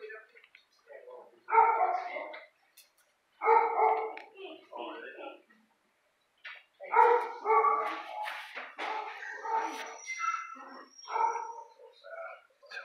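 Dogs barking in a shelter kennel: several loud bursts of barking with sharp starts and short gaps between them.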